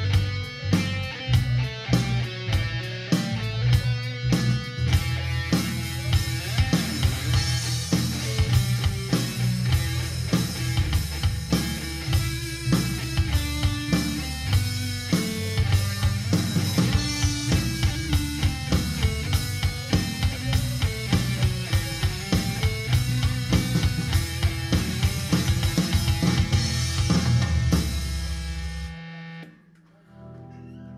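Full-band rock music: a single-cutaway electric guitar played over a steady drum-kit beat with a heavy bass line, stopping abruptly about a second before the end.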